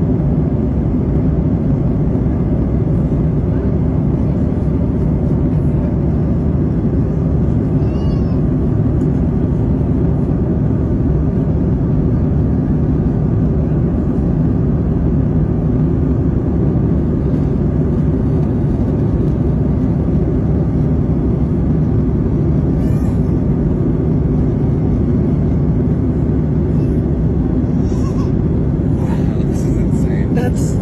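Steady low roar of airliner cabin noise, the jet engines and airflow heard from inside the passenger cabin. A few faint high squeaks come through about a third of the way in and again near the end.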